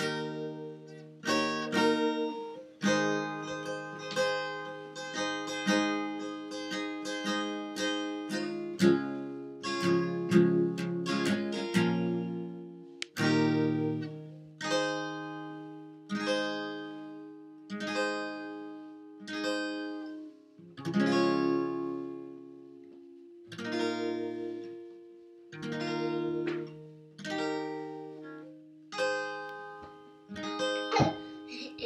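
Acoustic guitar strumming chords, busy and rhythmic at first, then slower strums about once a second, each left to ring.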